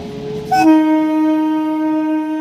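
An Indian Railways electric train's horn sounding one long, steady blast that starts suddenly about half a second in, over the rumble of the passing train.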